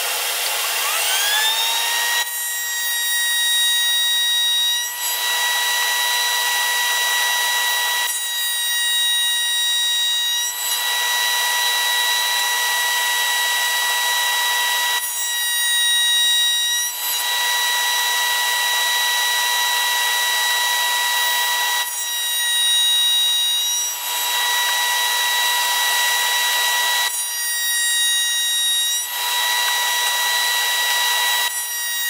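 Table-mounted router spinning up about a second in, then running with a steady high whine while a rail-and-stile coping bit cuts the ends of poplar rails pushed past it on a sled. Five cuts, each two to three seconds of rougher cutting noise over the whine, come about six seconds apart.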